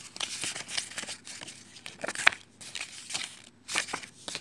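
Paper leaflets and booklets rustling and sliding against each other as they are handled, with one sharper crack a little past halfway.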